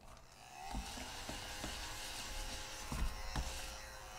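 Small battery-powered motor, a red mini desk vacuum run over a freshly scratched lottery ticket to clear the scratch-off shavings. It spins up about half a second in with a rising hum, runs steadily with a hiss and a few light ticks, and begins to wind down near the end.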